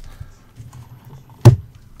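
A single sharp click about one and a half seconds in as a gloved hand handles small capacitors on the workbench, with faint handling noise around it.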